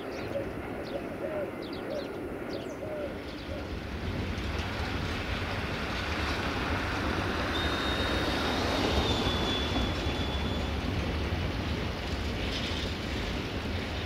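Siemens Desiro diesel multiple unit approaching: a low engine and rail rumble that builds from a few seconds in and stays strong through the second half. A thin, steady high tone sounds for about three seconds around the middle.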